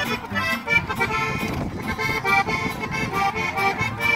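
Live acoustic band playing an instrumental break between sung verses: plucked upright bass and strummed acoustic guitar under a lead melody line.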